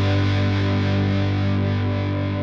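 Intro music: one held, distorted electric guitar chord ringing out, its bright top end slowly dying away.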